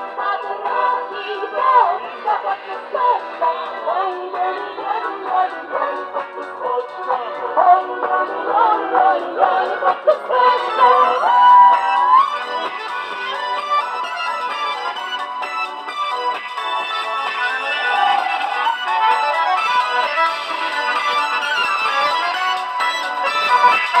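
Russian folk song played live: women's voices singing over accordion and balalaika accompaniment. About halfway through the singing drops back and a steadier, mostly instrumental passage carries on.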